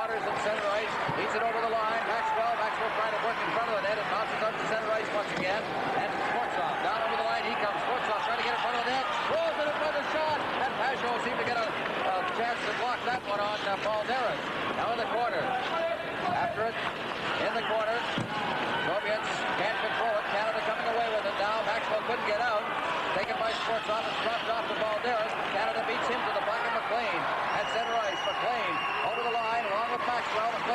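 Arena crowd at a live ice hockey game: many voices shouting and cheering at once, steady throughout, with occasional knocks of stick and puck. A short high whistle sounds near the end.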